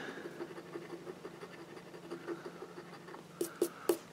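A coin scratching the latex coating off a paper lottery scratch-off ticket: a faint, rough rasping, with a few short sharp clicks near the end.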